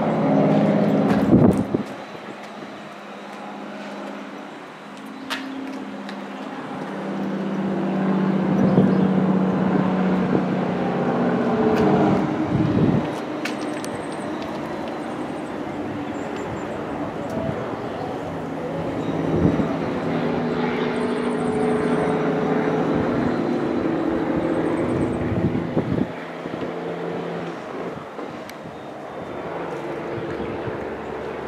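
Road traffic on the highway below: vehicle engine hum and tyre noise swelling and fading as cars and trucks pass. A few faint high chirps sound now and then.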